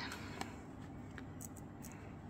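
Quiet room hum with a few faint, light ticks as small ammonium dihydrogen phosphate crystals are picked up and handled by fingers.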